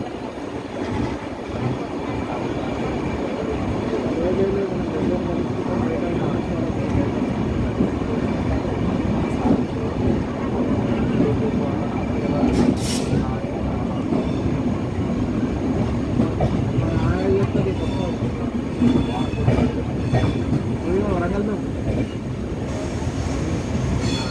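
Indian Railways passenger train rolling out of a station, heard from inside a coach: a steady rumble of wheels on rail that grows a little louder over the first few seconds as it picks up speed, with a few brief squeals.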